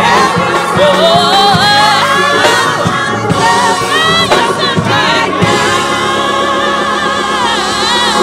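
Small gospel choir singing a lively song, backed by a drum kit keeping a steady beat.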